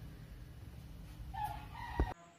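Low room noise, then a faint pitched call in the background starting about two-thirds of the way in and rising slightly in pitch, cut off at the end.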